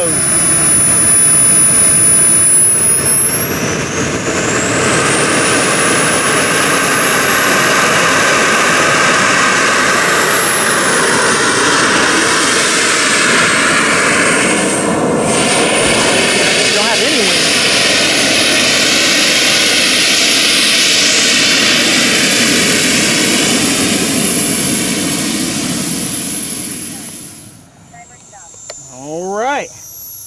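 Model jet's 80-newton Swiwin kerosene turbine running, a steady rush with a high whine on top. The whine climbs a few seconds in and then holds steady. Near the end the sound dips sharply, then rises again.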